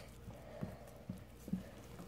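A few faint, soft taps, about four of them roughly half a second apart, over low room noise.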